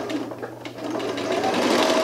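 Janome electric sewing machine running, stitching through a small fabric cushion to close its opening; it runs louder in the second half.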